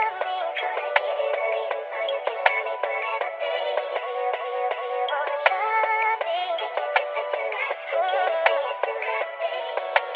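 Music: a melodic sample loop of pitched, bending notes with the bass and drums dropped out, leaving a thin mid-range sound, and a faint click about every second and a half.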